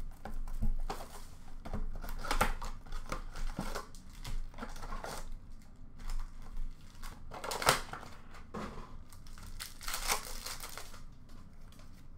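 Packaging of a hockey-card blaster box being opened and its card packs torn open: irregular crinkling and tearing of wrapper and cardboard, in uneven bursts.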